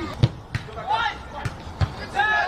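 Football being kicked on a grass pitch: several dull thuds of boot on ball, the loudest about a quarter of a second in, with a player's shout about a second in.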